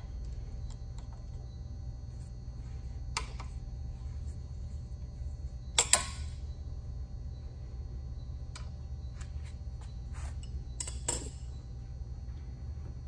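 A few sharp metallic clicks and clinks as pliers work a small brass crankcase vent fitting off the compressor head and it is set down, the loudest about six seconds in with a brief ring and two more near the end, over a steady low hum.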